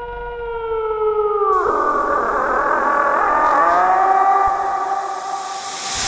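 Eerie horror-style sound effect. A held tone sags slightly in pitch, then about a second and a half in gives way to a swelling wash of wavering tones, building to a rising hiss near the end.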